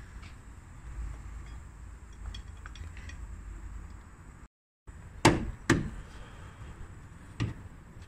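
Sharp metallic knocks from tools working at the injectors of a BMW diesel engine: two close together about five seconds in and a third a couple of seconds later, over a low steady rumble with faint clicks.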